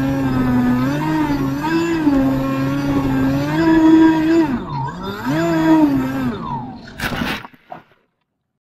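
Brushless electric motor and propeller of a ZOHD Talon GT Rebel fixed-wing, heard from its onboard camera, whining with its pitch rising and falling as the throttle changes. The whine dips sharply just before five seconds in, comes back, then winds down about six and a half seconds in. About seven seconds in there is a short burst of noise as the plane touches down in the grass.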